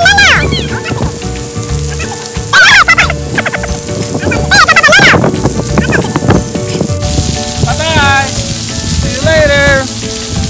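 Splash-pad water jets spraying onto the wet concrete with a steady, rain-like hiss, with children's high-pitched squeals and calls several times.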